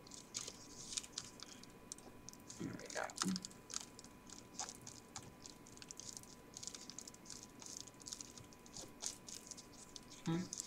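Crinkling and crackling of a pleated paper cupcake liner being handled and pressed flat onto paper, as many small irregular crackles. A brief low murmur of a voice about three seconds in.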